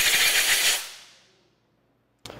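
Compressed-air blow gun hissing as it blows off a freshly vapor-honed aluminium engine case, fading out after about a second.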